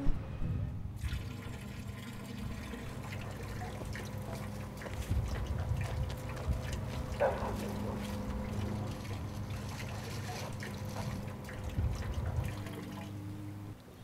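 Motor oil pouring and trickling from a plastic bottle into a street storm drain grate.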